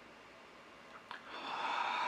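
A woman's long, audible breath through a pouch of loose-leaf tea held to her face as she smells it, swelling and fading over about a second. A faint click comes just before it, after a quiet first second.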